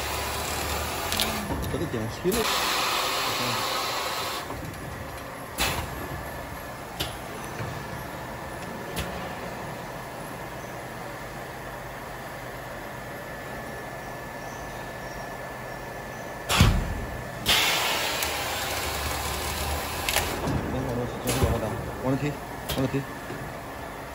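Colour-mark panel cutting machine running with a steady hum and a faint whine, and a few light clicks. A loud single thump about two-thirds of the way in is followed by a burst of hiss, as the machine cuts automatically on the sensor's marking line. A similar hiss comes near the start.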